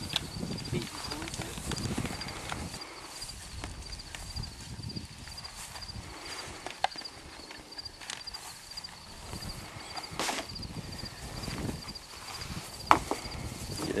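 Black poly drop pipe being fed by hand down a PVC well casing: low scraping and handling noise, with a few sharp knocks, the loudest near the end.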